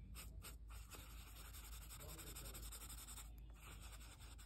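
Faint scratching of a pencil point on paper as it shades a small area in short strokes.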